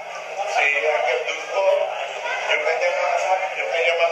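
A man's voice speaking through a microphone and loudspeaker, with music playing underneath, heard second-hand as a recording played back from a screen, with a steady low hum.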